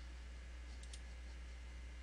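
A couple of faint computer mouse clicks close together about a second in, over a steady low electrical hum.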